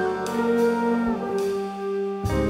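Jazz big band playing, with the trombone section holding brass chords.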